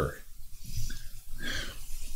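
Soft, scattered laughter from the congregation, with a faint cluster about one and a half seconds in.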